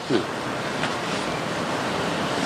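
Steady rushing noise with a short low vocal sound just after the start.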